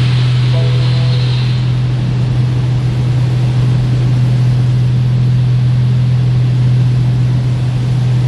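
Automatic car wash heard from inside the car: water and soap spraying over the windshield, with a loud steady low hum from the wash machinery. The spray hiss is strongest in the first second or so, then settles into an even wash.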